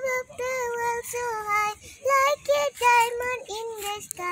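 A young child singing a Bengali rhyme in a high voice, with long held notes and short breaks between phrases.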